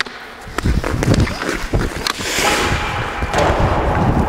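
Hockey skates striding on rink ice and a stick working a puck, with a run of sharp clicks and knocks in the first two seconds as a snap shot is taken, then a long scraping hiss of skate blades stopping on the ice.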